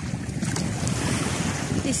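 Wind buffeting the microphone, a steady ragged rumble, over the wash of calm, shallow sea water.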